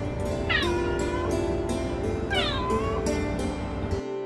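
Domestic cats meowing twice, each meow falling in pitch, as they wait at their owner's feet to be fed.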